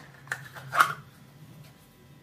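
Knife drawn from a kydex sheath: two short scraping clicks of the blade coming free of the plastic, the second the louder.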